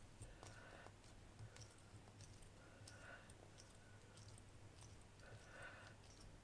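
Near silence, with faint scattered clicks and soft rubbing from hands pressing and smoothing air-dry clay over a round form.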